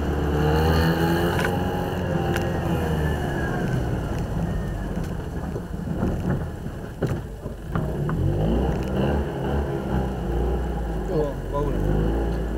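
Citroën 2CV's air-cooled flat-twin engine running as the car pulls away and drives slowly along the street. A public-address announcer's voice is heard over it.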